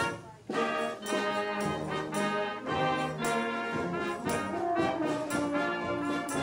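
Brass band music, with several brass parts over regular beats; the music drops out briefly just after it begins and then carries on.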